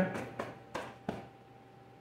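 A few light clicks and taps in the first second or so as the opened plasma cutter's chassis is handled, then a quiet room.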